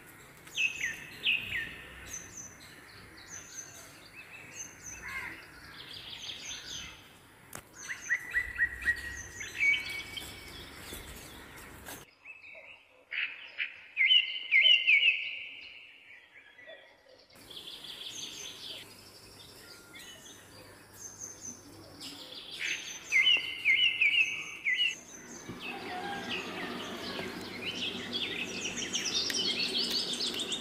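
Wild birds chirping and calling outdoors, a short high chirp repeating over and over beneath louder warbled calls. A denser background of insect noise builds up near the end.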